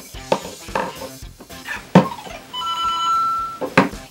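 Electronic game-style music and sound effects from the LEGO Super Mario figure's speaker, with sharp hits throughout and a held beeping tone for about a second starting about two and a half seconds in.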